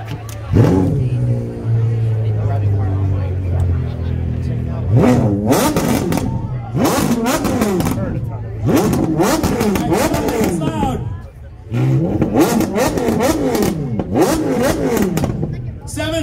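RUF-prepared Porsche Carrera GT's V10 engine starting about half a second in and idling for a few seconds. From about five seconds in it is revved again and again in quick blips, with a short lull near the middle.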